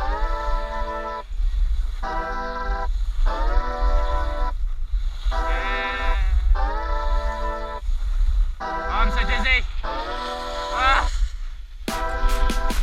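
Background music: a song with held pitched phrases about a second long, separated by short breaks, over a steady low bass.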